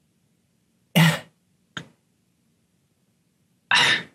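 A person coughs briefly about a second in, with a shorter second sound just before two seconds, then a louder burst of voice near the end. The gaps between them are dead silent.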